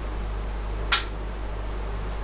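Steady low electrical mains hum with a faint hiss, and one short, sharp click about a second in.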